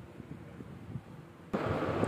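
Faint handling sounds of fingers pressing heat-resistant tape onto a phone's circuit board. About one and a half seconds in, a steady hiss cuts in suddenly and becomes the loudest thing.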